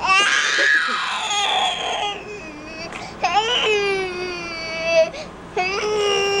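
Six-month-old baby crying in long wails: a loud first cry that falls in pitch, a second wail about three seconds in, and a third starting near the end.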